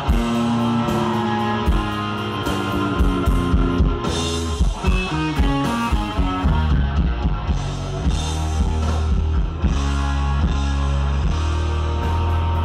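A live rock band playing an instrumental: electric guitar lead over bass and a drum kit, loud and continuous. About five seconds in, the guitar plays a run of notes stepping down.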